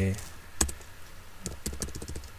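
A few keystrokes on a computer keyboard: a single key about half a second in, then a quick run of keys near the end.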